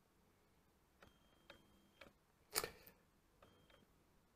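Near silence with a few faint clicks and short thin whirs, typical of a camera lens refocusing, and one brief louder rustling click about two and a half seconds in as the wristwatch is handled.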